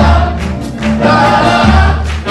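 Live band music: a loud, low bass note that changes to a new note about one and a half seconds in, under a held chord of voices or instruments.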